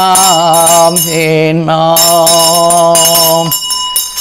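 A Buddhist monk chanting paritta in one long, drawn-out male voice, with a struck metal bell ringing on behind it. The chant breaks off near the end while the bell tone lingers.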